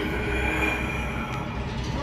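Train running, heard from inside a passenger compartment of the Hogwarts Express ride: a steady low rumble with a thin high squeal over it.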